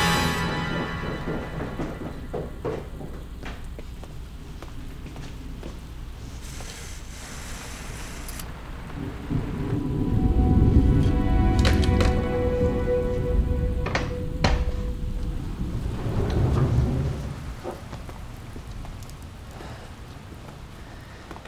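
Steady rain with rolling thunder, a low rumble swelling about halfway through and again near the end, with a few sharp cracks, under a quiet music score.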